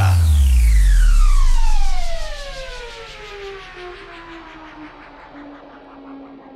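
Electronic falling-pitch sweep effect in a guaracha DJ mix: a deep bass drop under a pitched tone that glides steadily downward. It is loud for about two seconds, then fades out over the next few seconds.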